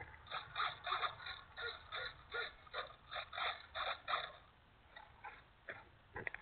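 Servos of a small electric RC jet driving the elevators back and forth. They make a quick run of short whirs, about three a second, then a few scattered ones near the end, as the control surfaces are cycled to check that both elevator halves move the same.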